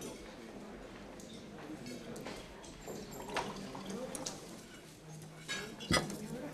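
Restaurant background: faint chatter of diners with a few light clinks of dishes and cutlery.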